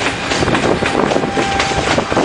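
ČD class 680 Pendolino electric train rolling past as it departs, its wheels clattering over rail joints and points in an uneven run of knocks, several a second.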